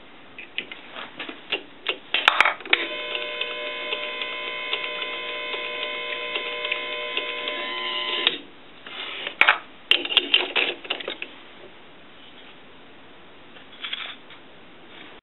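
A small electric power driver runs steadily for about five and a half seconds, driving a stainless steel screw through a wooden knob into a kettle lid. Clicks and clatter of parts being handled come before and after.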